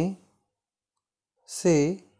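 Slow Hindi dictation: a voice finishes one word, then about a second and a quarter of dead silence, then one more short word near the end.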